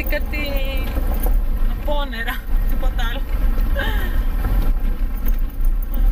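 Inside a moving car with a window open: a steady low rumble of wind buffeting and road noise, with voices heard over it.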